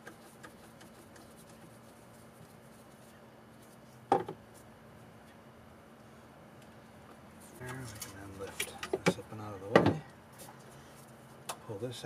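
Hand tools and metal parts being handled in a golf cart's engine bay: one sharp metallic clank about four seconds in, then a cluster of clicks and knocks near the end, mixed with brief low muttering, over a faint steady hum.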